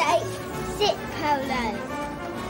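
A boy's voice calling commands to his dog, telling it to stay and sit, over background music.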